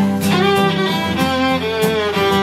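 Live instrumental passage: a bowed string instrument playing a sustained melody with a falling slide about a second in, over a steady low accompaniment.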